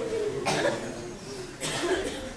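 Coughing in a theatre audience, with low voices murmuring. There is a cough about half a second in and another near the end.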